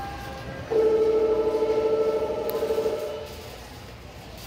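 A loud held tone with a few stacked pitches. It starts sharply just under a second in, wavers for about two seconds and then fades out, over a steady store background hum.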